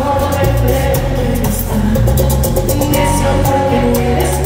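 Live bachata band playing loudly, with a bass line, guitar and a steady beat of high percussion strokes, and a singer's voice over it.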